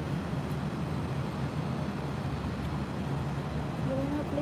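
Steady low background rumble of city traffic, with no distinct events.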